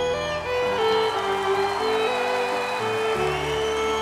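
Live country band music with a fiddle playing long held melody notes; the bass drops out for a couple of seconds and comes back in near the end.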